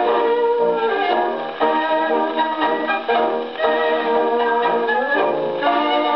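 EMG horn gramophone playing a 78 rpm record of a dance orchestra performing a tango.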